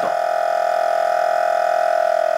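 Danfoss Secop BD35 refrigeration compressor running on 230 V mains: a steady, unbroken hum with a high tonal whine.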